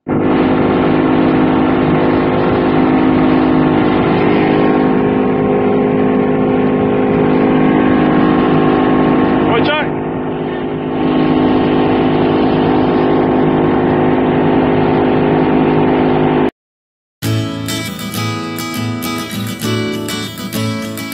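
Small motorboat's engine running steadily under way, with wind and water noise, heard from on board. It cuts off abruptly about sixteen seconds in, and after a short silence strummed acoustic guitar music begins.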